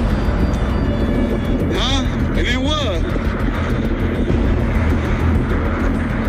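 A steady low rumble, with a person's voice breaking in twice briefly about two seconds in and again just after, and music in the background.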